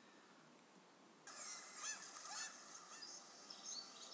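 Birds calling over a lake: a run of short, repeated calls that starts suddenly about a second in, over a faint outdoor hiss.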